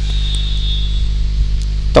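Steady low electrical hum from the recording setup, with a faint high whine over it and a few faint keyboard clicks.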